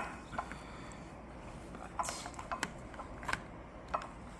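Metal ice cream scoop scraping and clicking through hard-frozen homemade ice cream in a plastic bowl: several short, separate scrapes and light knocks. The ice cream is frozen hard, so the scoop works against resistance.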